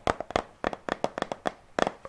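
Quick, irregular clicks and taps on an empty plastic Fa shower gel bottle held close to the microphone, about a dozen, with the loudest cluster near the end.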